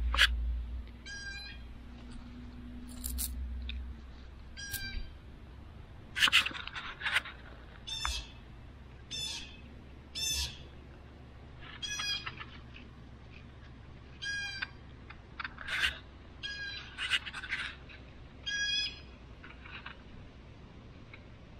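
An animal calling, short high calls repeated about a dozen times at irregular gaps, with a few sharp clicks or rustles among them. A low rumble fades out about a second in.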